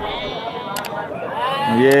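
Sheep bleating: one long bleat begins about halfway through.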